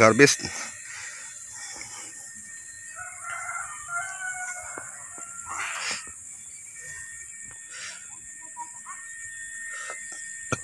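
A rooster crowing in the distance about three seconds in, over a steady high-pitched insect drone.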